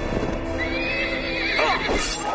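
A horse whinnying: one high, wavering call starting about half a second in that drops in pitch near the end.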